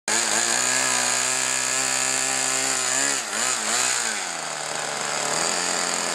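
Small engine of a radio-controlled model Tucano aircraft running on the ground. About three seconds in, its pitch dips and wavers several times over roughly a second, then settles to a lower, steady idle.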